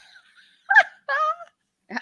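Women laughing: a breathy laugh trailing off, then two short, high-pitched laughing cries with a wavering pitch about a second in.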